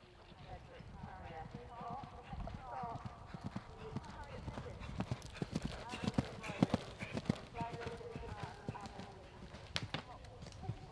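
Hoofbeats of an event horse cantering on turf, a run of dull thuds that are loudest about five to seven seconds in, with people talking in the background.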